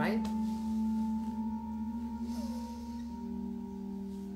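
Soft background meditation music of sustained, ringing drone tones, moving to a new chord about three seconds in.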